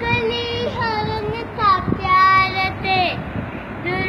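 A young girl singing a Sindhi song in a high voice, holding short notes and sliding between them, with brief breaths between phrases.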